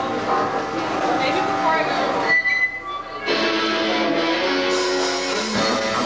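Rock band starting a song live: electric guitar notes over voices in the room, then held guitar chords ringing from about three seconds in, with a brighter, fuller band sound joining near the end.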